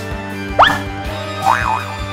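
Cartoon boing sound effects over steady background music: a quick upward pitch sweep about half a second in, then a wobbling up-and-down boing near the end.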